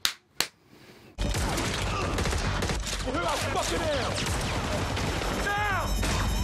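Rapid gunfire from a film soundtrack: after a few sharp clicks and a brief hush, a dense, continuous volley of shots starts a little over a second in and keeps going, with voices over it.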